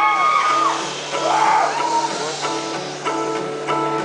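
Two acoustic guitars, a steel-string and a nylon-string classical guitar, picking a gentle repeating pattern at the start of a song. Over the first two seconds the audience's cheering and whoops die away under the guitars.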